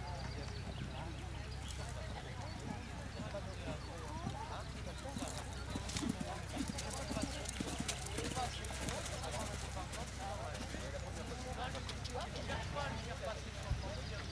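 Hoofbeats of an Anglo-Arab stallion cantering on arena sand, with a run of sharper strokes from about five seconds in, over indistinct background voices.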